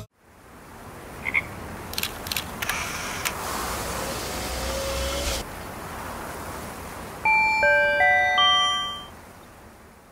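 Studio logo sound effect: a swelling whoosh of noise with a few sharp clicks, then a quick run of short, bright chime notes at different pitches that fades away.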